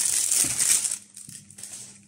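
Plastic food packaging crinkling as it is handled, a loud rustle for about a second, then fainter rustles and light clicks.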